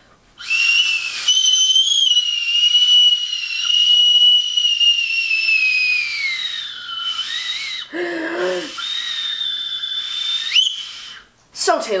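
Two small plastic toy whistles blown together: two slightly mismatched high notes held for about six seconds, sagging in pitch near the end. After a short break, one whistle sounds alone for under two seconds and ends in a quick upward squeak.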